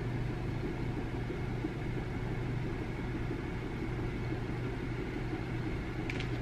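Steady low hum under a faint even hiss, with no distinct event: room tone.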